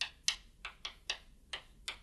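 Chalk clicking and tapping on a chalkboard as a formula is written: about seven short, sharp, irregular clicks.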